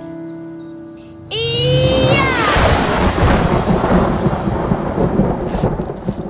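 Thunder and rain sound effect: a rumbling thunderclap comes in about a second in, with a falling pitched glide over its start, then settles into a steady wash of rain and rumble.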